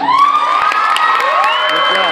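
Audience cheering with long, high whoops and shouts, breaking out suddenly at the end of a song.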